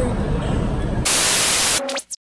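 Background crowd babble, then about a second in a sudden burst of TV-static hiss lasting under a second and cut off abruptly: an edited-in static transition effect.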